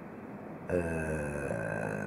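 A man's drawn-out hesitation sound, a low, steady-pitched 'eeh' held for about a second without forming words. It starts under a second in and trails off.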